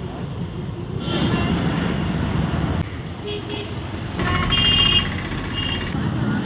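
Street traffic with engines running and a vehicle horn honking about four seconds in, the loudest sound in the stretch.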